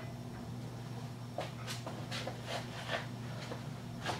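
Quiet room tone with a low, steady hum, and a few faint clicks and rustles from about a second and a half in as gloved hands handle a screwdriver.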